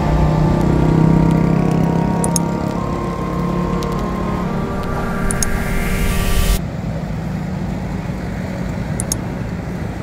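Road traffic passing, a steady rumble of truck, car and motorbike engines and tyres. Electronic music with held chords plays over it and cuts off suddenly about six and a half seconds in.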